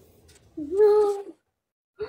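A cat meowing once, a single drawn-out call of just under a second.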